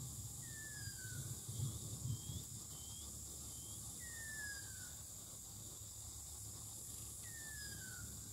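Outdoor ambience with a bird giving a clear, falling whistle three times, a few seconds apart, and fainter short chirps between, over a steady high-pitched hum. Low rumbles and bumps in the first couple of seconds.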